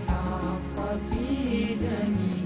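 A group of male voices sings a nasheed (Islamic devotional song) in unison and harmony, with a low sustained bass note held under the melody.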